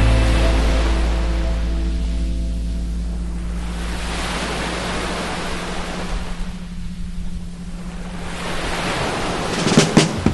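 Ocean surf washing onto a sandy beach, swelling and easing twice, while a held music chord and bass fade away over the first few seconds. A steady low tone, the 174 Hz meditation frequency, hums under the surf until just before the end, when music starts up again.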